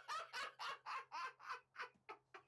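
A man laughing in a run of short, high-pitched bursts, about four a second, growing fainter.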